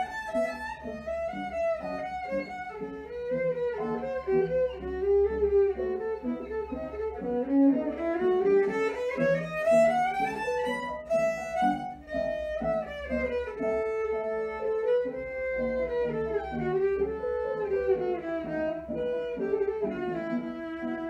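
Solo violin playing a quick melody of short bowed notes. About halfway through, a long run climbs steadily in pitch, and it then comes back down.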